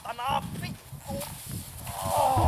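A man letting out a short, loud laugh in the first half-second, followed by quieter scattered voice sounds.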